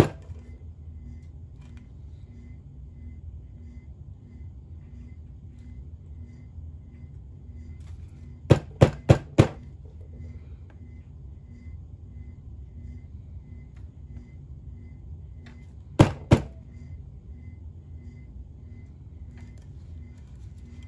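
A plastic squeeze bottle of puffy paint being knocked nozzle-down, in quick runs of sharp taps: four about eight and a half seconds in, two more at about sixteen seconds, over a low steady hum.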